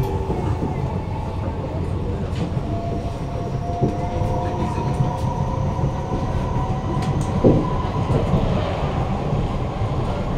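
Kawasaki–CRRC Sifang C151A metro train running between stations, heard from inside the carriage: a steady rumble of wheels on rail with a faint whine. Occasional clicks sound over it, the loudest about seven and a half seconds in.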